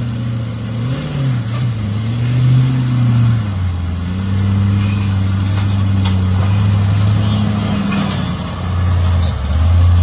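Rock-crawling Jeep's engine running at low revs, its pitch wavering up and down as the throttle is worked over the rocks, with a few light clicks.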